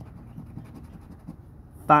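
Monopoly scratch-off lottery ticket being scratched: faint, quick, irregular scrapes as the coating over a winning number is rubbed off.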